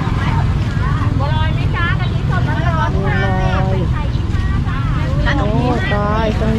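Nearby voices of people talking in short phrases, over a steady low rumble.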